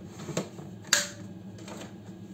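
Plastic lid of a Cecotec Mambo cooking robot being pressed down onto its stainless-steel jug, giving a few clicks, the sharpest about a second in.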